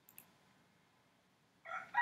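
A rooster crowing: one long held call that begins near the end. A faint mouse click just after the start.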